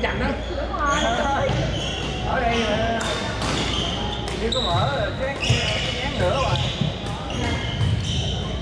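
Badminton in a large echoing gym: sharp racket strikes on shuttlecocks from several courts, short high squeaks of sneakers on the hardwood floor, and players' voices carrying around the hall.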